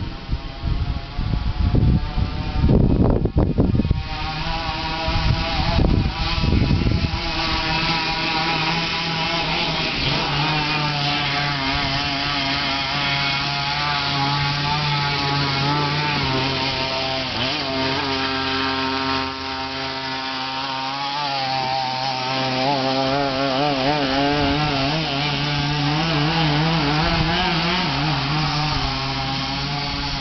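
Small two-stroke pocket-bike engine on a motorised pedal go-kart, running under way with its pitch wavering as the revs rise and fall, dipping briefly about two-thirds of the way through. The first few seconds are broken by loud, irregular rushes of noise.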